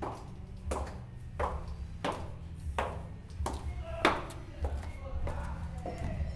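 High-heeled shoes stepping down wooden stairs, one sharp footstep about every 0.7 s, around nine steps in all.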